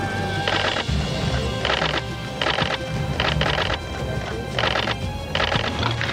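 Background music under about six short rattling bursts of a camera shutter firing in rapid continuous shooting.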